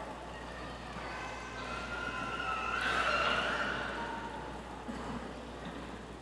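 A siren, its wail swelling to its loudest about three seconds in and then fading away.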